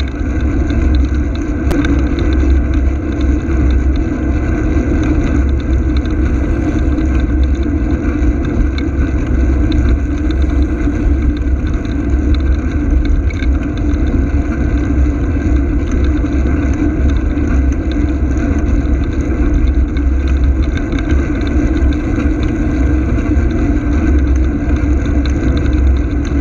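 Loud, steady rumble of riding along a road: wind on the microphone mixed with road and vehicle noise, keeping an even level with no sharp events.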